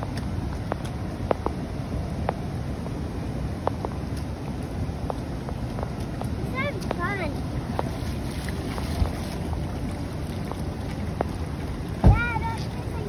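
Shallow floodwater running steadily over grass, with wind buffeting the microphone and scattered light splashes of rubber boots stepping through the water. A child's brief high-pitched voice a little past halfway.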